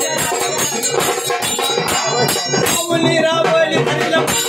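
A Marathi devotional song to Khandoba: a steady, fast beat of percussion with jingling rattles, and a voice singing over it.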